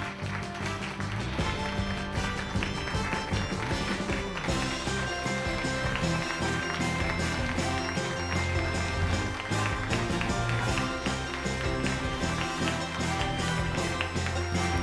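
Background music: held notes at first, with a steady drum beat joining about four seconds in.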